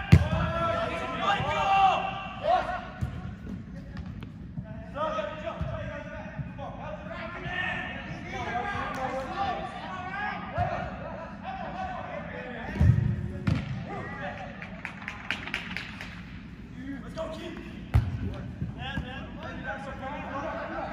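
Players shouting and calling to each other during an indoor soccer game, with sharp thumps of the ball being kicked: the loudest right at the start, two more around two-thirds of the way in and another near the end.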